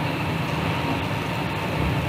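Steady road and engine noise of a car cruising at highway speed, heard from inside the cabin: an even low rumble with tyre hiss.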